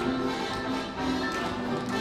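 Live stage music with held notes and frequent quick, sharp taps over it.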